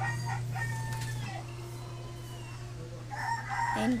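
A long, drawn-out animal call, faint, over a steady low hum.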